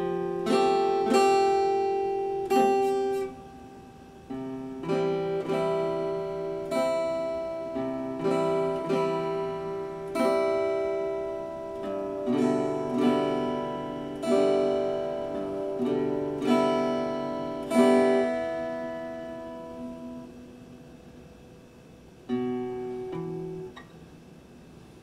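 Epiphone acoustic-electric guitar played solo: plucked chords and notes, each left to ring and fade, about one a second. There is a short break about three seconds in, and near the end a chord rings down before a few last notes.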